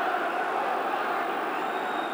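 Steady noise of a football stadium crowd, an even wash of many voices with no single sound standing out.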